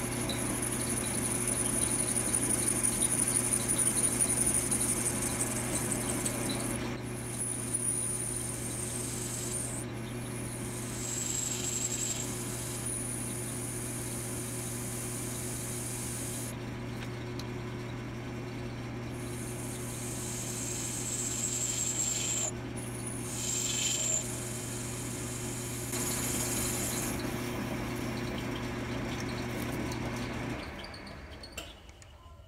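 10-inch Logan metal lathe running with a steady motor and drive hum while a ground high-speed-steel tool cuts a thread relief groove into the spinning workpiece. A thin high-pitched cutting whine comes and goes over the hum, strongest in the first several seconds and again twice later.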